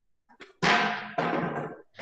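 Two loud knocks close to the microphone as a person gets up from a desk: furniture bumped and shifted, each knock dying away over about half a second.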